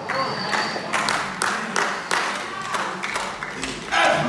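Audience clapping and applauding in a hall, a dense patter of sharp claps at about three or four a second, with some voices in the crowd.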